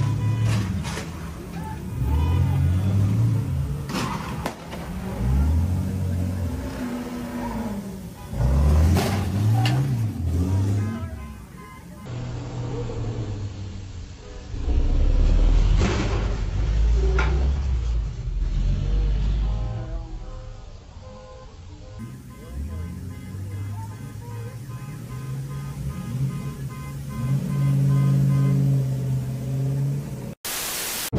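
Engines of two heavy-duty pickup tow trucks revving up and down repeatedly as the trucks ram each other, with several hard metal impacts.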